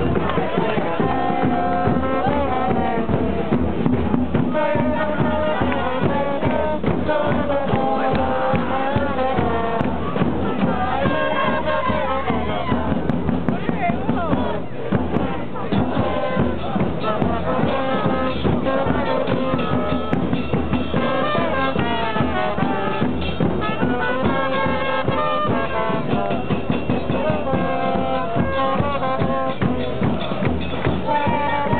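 A supporters' brass band in the stands, trombones and trumpets, playing a chant tune over drums without a break, with the voices of the crowd mixed in.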